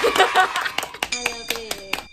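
Three people clapping their hands in a quick, uneven run of claps, with laughter and voices over it.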